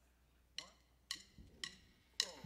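Drumsticks clicked together in a count-in: three faint, sharp clicks about half a second apart, setting the tempo for the band.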